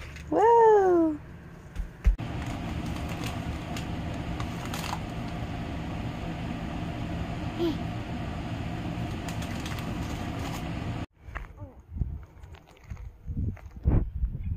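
A toddler's short, high voice rising and falling once, then a steady low hum with an even hiss.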